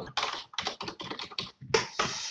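Typing on a computer keyboard: a quick, irregular run of keystrokes.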